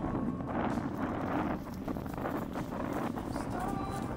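Indistinct outdoor voices under wind buffeting the microphone.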